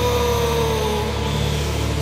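Heavy metal music: a held high note that sags slightly in pitch and fades out about a second in, over a steady low, distorted drone without drums.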